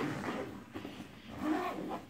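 Zipper on a fabric bowling bag being tugged in uneven, rasping pulls; it is sticking rather than running freely.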